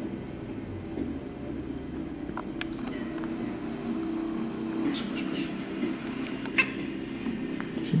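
Black-and-white domestic cat making a few short calls, about two and a half, five and six and a half seconds in, over a steady low hum.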